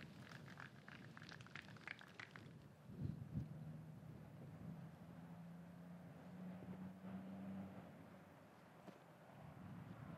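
Near silence: faint outdoor ambience. There are a few faint ticks in the first couple of seconds, a soft knock about three seconds in, then a faint low hum for several seconds.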